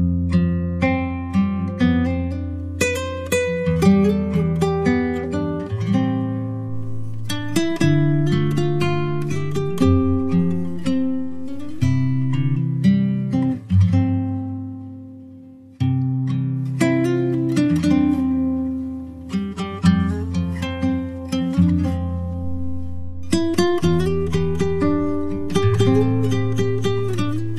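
Background music: acoustic guitar plucking and strumming chords, with a brief fade about two-thirds of the way through before it picks up again.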